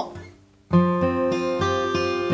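Acoustic guitar fingerpicking a Dsus2 chord as a slow arpeggio in three-beat time. The notes start suddenly about two-thirds of a second in, after a brief pause, about three a second, ringing on together.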